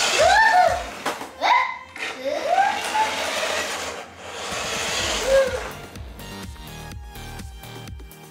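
Excited wordless vocal exclamations, several long rising-and-falling calls, over the first few seconds. About five seconds in, upbeat electronic background music with a steady beat takes over.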